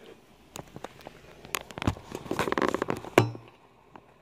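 Plastic instant-noodle packaging crinkling and crackling as it is handled close to the microphone. The crackles build to a dense run about two seconds in and end with one sharp knock just after three seconds.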